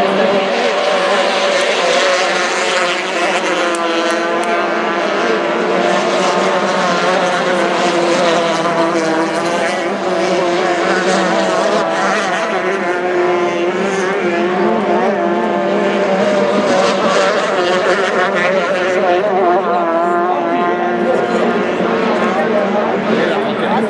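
Several F-350 racing powerboats' engines running hard at high revs as the boats race by, their overlapping pitches wavering and shifting as they throttle.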